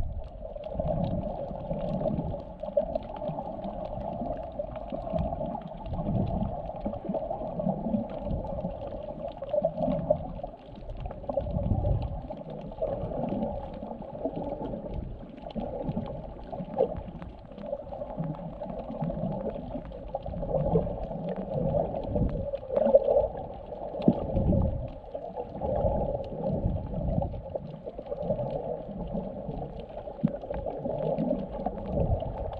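Muffled underwater sound heard through a camera's waterproof housing held just below the surface: water moving against the housing in irregular low rumbles and sloshes, over a steady dull hum.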